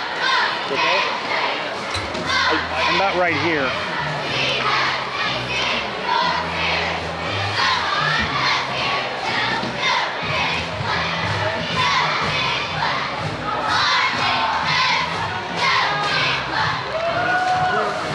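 A cheerleading squad shouting a chant together over the noise of a gymnasium crowd.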